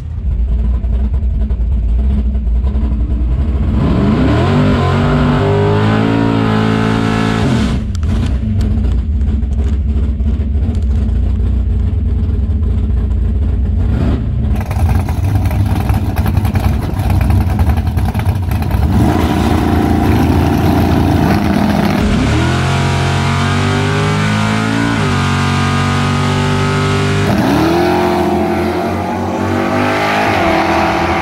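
Drag race car engines rumbling and revving, then launching down the strip at full throttle. Near the end the engine note climbs three times, dropping back at each upshift.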